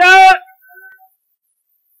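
A man's voice on an old archival recording draws out the last syllable of a proclaimed sentence, ending about half a second in with a faint trailing tone; the rest is silence.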